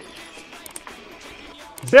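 Mountain bike rolling over a dirt trail: a low, even noise of tyres on ground with a few faint ticks, under faint background music.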